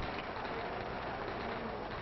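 Steady hiss of an old 1950s film soundtrack in a pause between lines of dialogue, with no other distinct sound.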